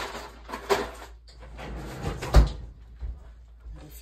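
A freezer compartment being opened and shut to fetch ice: a few knocks and clatters, the loudest a heavy thump about two and a half seconds in.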